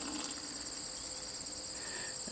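Steady, high-pitched chorus of crickets trilling without a break.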